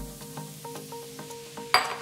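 Drained canned chickpeas pattering as they are poured from a small glass bowl into a large glass mixing bowl of quinoa, heard as many faint light clicks under steady background music. A sudden, louder sound comes near the end.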